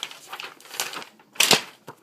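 Sheets of paper rustling and flapping as they are handled, in a few short bursts, the loudest about one and a half seconds in.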